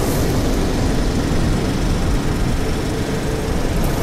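A loud, steady, deep rumbling noise, an edited-in intro sound effect with a heavy low end.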